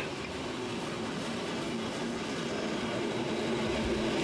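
Steam-hauled passenger train running, heard from a carriage window: a steady rumble of wheels on rails that grows slowly louder.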